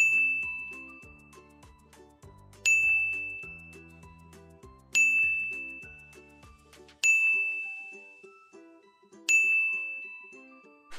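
A ding sound effect chiming five times, about two seconds apart, each strike ringing out and fading, one for each syllable to be read aloud. Soft background music runs underneath, and its bass drops out about seven seconds in.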